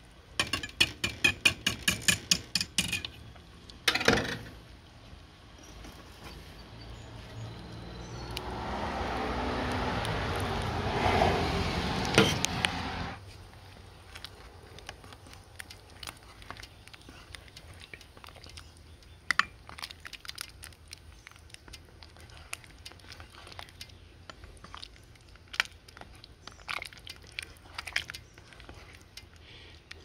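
A wire whisk rattles fast against the stainless steel inner pot of an Instant Pot, then a spoon stirs the soup with scattered scrapes and clinks against the pot. In the middle, a louder rushing noise builds for about five seconds and cuts off suddenly.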